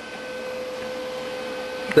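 A steady hum and hiss carrying a faint, constant high tone, with no distinct events.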